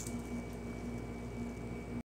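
Room tone: a low steady hum with a faint high tone and an even hiss, with no distinct events.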